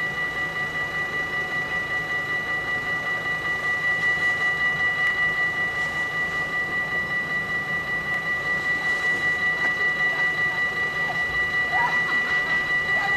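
Railway level-crossing warning bell ringing steadily, an even high-pitched ring pulsing about three strokes a second.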